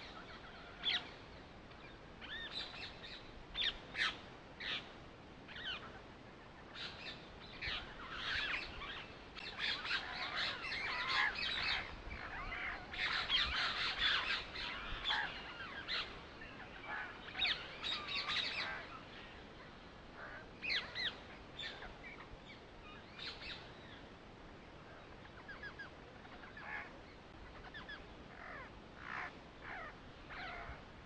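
Birds chirping and calling on and off in quick clusters, busiest through the middle and thinning out toward the end.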